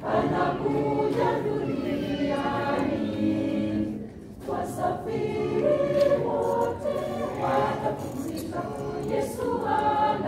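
A choir of mostly women's voices singing together, with a short pause for breath between phrases about four seconds in.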